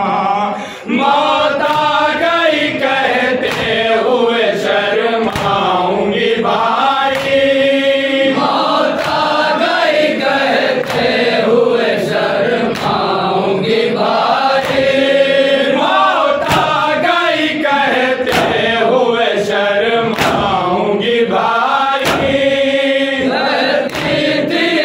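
A group of men chanting an Urdu noha (lament) in unison into a microphone. A sharp slap about once a second from chest-beating (matam) keeps the beat.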